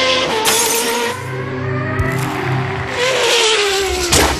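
Formula One racing car engine at high revs, a high-pitched whine that falls in pitch as it passes, then rises and falls again near the end, with bursts of rushing noise, over background music.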